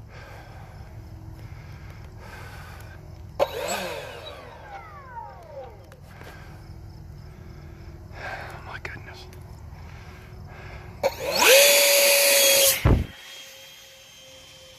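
RC jet's electric ducted fan whining in flight. About three and a half seconds in it sweeps past with a whine that falls in pitch. Near the end a loud, steady whine that rises at its start lasts about a second and stops abruptly, after which the whine carries on faintly.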